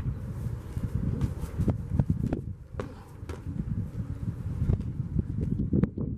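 Boxing gloves landing in a scattered series of sharp slaps and thuds, about eight in all, the strongest near the end, over a steady low rumble.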